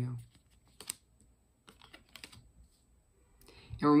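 Tarot cards being handled and laid down: a handful of light clicks and taps spread over a couple of seconds.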